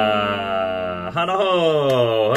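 A man's voice holding a long sung or chanted note, then sliding down in pitch about a second in.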